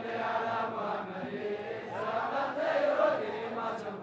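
Men's voices chanting a hadra, an Islamic devotional chant, in long melodic lines.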